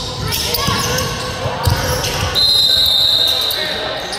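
Indoor basketball gym: voices, a basketball bouncing on the hardwood court, and a referee's whistle blown once, a steady high blast of about a second a little past halfway.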